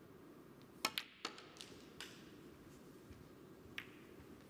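Snooker shot on the black: a sharp click of the cue tip on the cue ball, then a crisp clack of the cue ball hitting the black, followed by softer knocks as the black drops into the pocket. One more lone click comes near the end.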